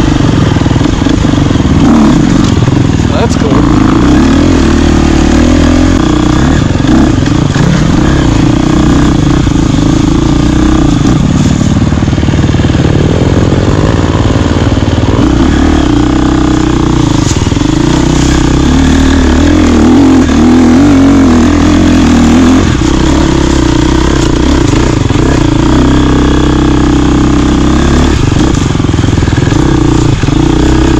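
Enduro dirt bike engine running loud and continuously, its pitch rising and falling repeatedly as the throttle is worked.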